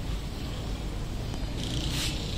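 Steady low rumble of outdoor background noise, with a brighter hiss rising near the end.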